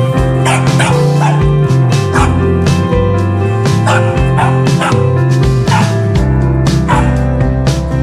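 A corgi puppy barks in about half a dozen short, sharp yaps at a broom being swept, over loud background music.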